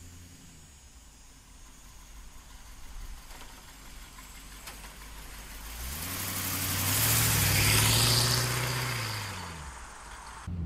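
1930 Ford street rod's small-block Chevy V8 driving past: faint at first, it grows louder from about six seconds in, is loudest around seven to eight seconds with the engine note rising then dropping in pitch, and fades as the car pulls away.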